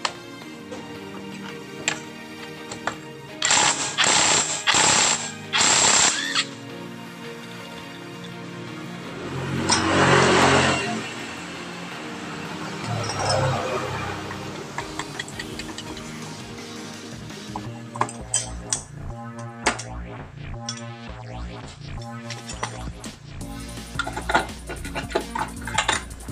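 Impact wrench hammering in four short bursts a few seconds in, undoing the CVT pulley nuts of a carburettor Honda Beat scooter. Later come scattered metal clinks and knocks as the pulley and drive belt are worked off, over background music.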